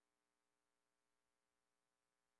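Near silence: the broadcast's audio is essentially dead, with only a faint steady electronic noise floor.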